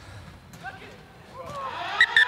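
Faint distant shouting voices in a sparsely filled stadium. Near the end, a steady tone begins to rise in level: the full-time siren starting to sound.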